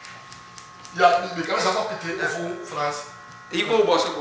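Men talking in conversation: a short pause, then speech resuming about a second in, with another phrase starting near the end.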